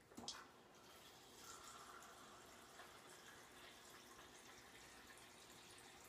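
Faint, steady sound of filtered water running into a measuring cup, with a light click just after the start.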